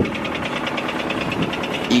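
Honda Civic EK engine idling with a rapid, even knocking: rod knock.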